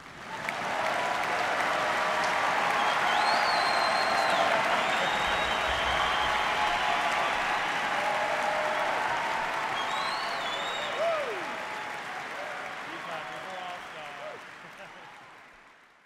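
A large audience applauding and cheering, with shouts rising above the clapping. It breaks out at once and fades away over the last few seconds.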